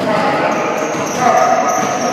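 Basketballs bouncing on a hardwood gym floor, mixed with voices talking.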